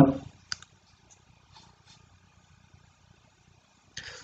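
A man's voice trails off, then a single short click about half a second in, followed by quiet room tone with a faint low hum.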